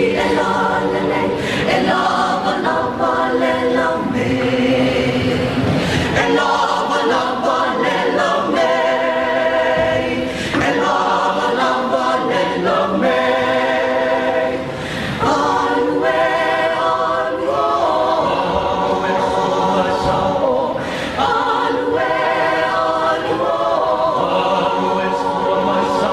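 Mixed choir of women's and men's voices singing a Samoan song a cappella in parts, in held chords with short breaks between phrases.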